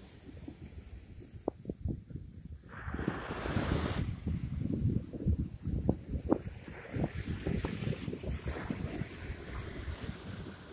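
Ocean surf breaking and washing up the sand, with a louder wash about three seconds in, while gusty wind buffets the phone's microphone with a low rumble.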